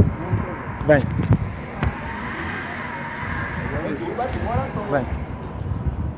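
Street noise with a vehicle driving past, swelling and fading in the middle, under short shouted calls of "vem".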